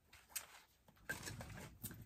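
Faint rustling and a few light clicks as paper-carded thread packs are handled and set down on a table.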